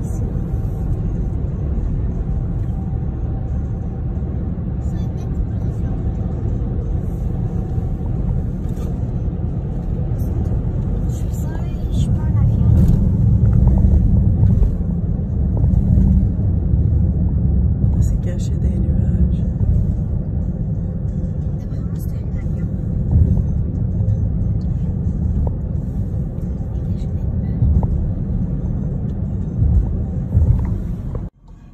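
A loud, steady low rumble, swelling about twelve seconds in and easing again a few seconds later.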